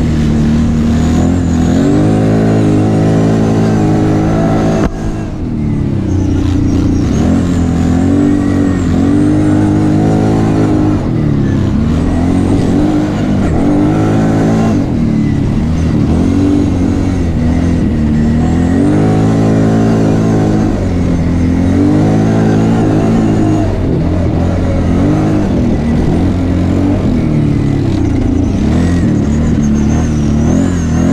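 ATV engine of the riding quad, revving up and easing off again and again as it accelerates and slows on a dirt track, its pitch rising and falling. The sound briefly drops about five seconds in.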